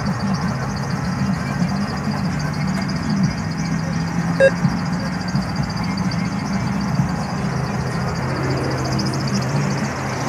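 A single short electronic beep from an ATM about four and a half seconds in, over a steady low hum of a vehicle engine running and outdoor traffic noise.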